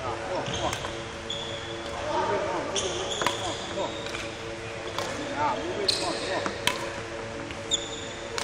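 Shoe squeaks and footfalls of a badminton player doing footwork drills on a wooden court: short high squeals at several points, mixed with sharp thuds of landing steps.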